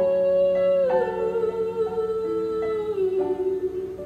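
A girl's voice singing long held notes that step down in pitch, once about a second in and again near the end, over a soft keyboard accompaniment.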